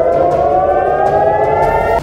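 Civil-defence air-raid siren wailing, its pitch climbing slowly and steadily, then cut off suddenly at the end: a warning of an incoming missile.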